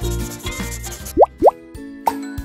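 Children's background music with two quick rising 'plop' sound effects, one after the other, about a second and a quarter in.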